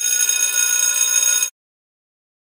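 Electronic ringing signal tone of an interval timer, sounding steadily for about a second and a half and then cutting off suddenly, marking the switch to the other side of the exercise.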